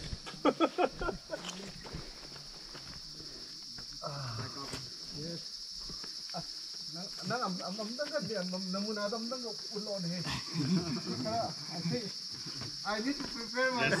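Insects droning steadily in the forest: one high-pitched, unbroken buzz. People talk over it at times, louder near the end.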